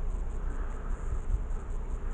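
Faint outdoor background with no distinct event: a low, uneven rumble of handling on a handheld camera's microphone under a steady high hiss.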